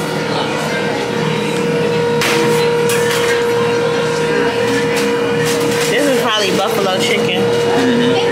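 Busy pizzeria counter ambience: indistinct voices under a steady mechanical hum, with a few sharp clatters about two to three seconds in.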